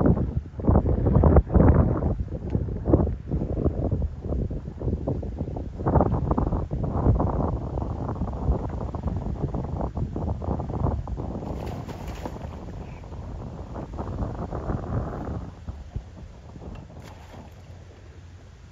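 Wind buffeting the microphone in irregular gusts, heaviest in the first couple of seconds and easing off near the end.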